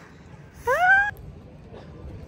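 A short, high-pitched squeal from a woman's voice, about half a second long, rising steeply in pitch and then holding, a little after half a second in.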